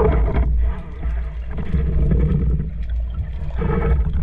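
Loud, low underwater rumble picked up by a camera on a speargun, swelling and easing every second or so as the spearfisher moves through the water and hauls on the shooting line.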